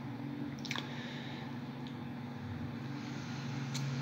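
Quiet room tone: a steady low hum with two brief faint clicks, one about a second in and one near the end.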